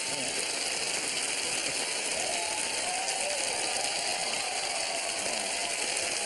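Studio audience applauding steadily, a dense even clatter of many hands clapping, with a faint voice underneath.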